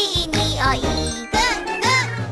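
Children's song: a voice sings a short line over a bouncy backing track with a steady bass line and tinkling sounds.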